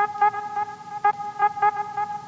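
Channel intro jingle: one steady, held pitched tone with an even, quick pulse of about five beats a second over it.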